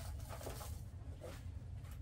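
Quiet room with a low steady hum and faint, soft handling sounds as the animatronic's cloth-and-foam arms are moved into place.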